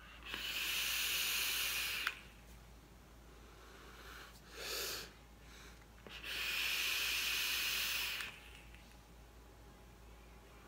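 Two long draws on an electronic-cigarette dripper, each a steady hiss of air pulled through the atomizer's airflow over the firing coil for about two seconds. A short breath sits between them.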